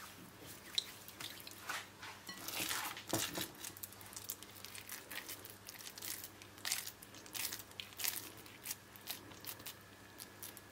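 Oiled hands scooping and pressing a moist mashed-eggplant and breadcrumb mixture into a ball in a glass bowl: a run of irregular, short wet handling noises, loudest about three seconds in.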